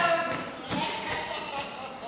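Footsteps of actors running across a hard stage floor: a handful of quick, uneven thuds.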